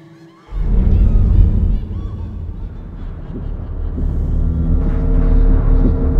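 Suspenseful film score: a sudden deep boom about half a second in opens a heavy low rumble, which swells into a drone with long held tones.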